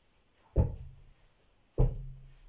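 Two slow, heavy foot stomps on a floor, about a second and a quarter apart, each a dull thud.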